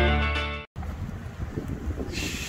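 Rock intro music ending on a held chord that fades and then cuts off abruptly under a second in. A low, uneven rumble of wind on the microphone follows.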